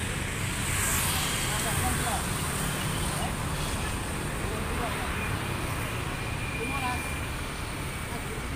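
Coach bus diesel engine idling steadily, a low even rumble.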